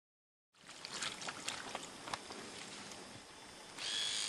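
After a short dead-silent gap, faint handling noise with scattered light clicks. Near the end a small electric tattoo machine starts buzzing steadily, used to tattoo an identification number on the sedated bear.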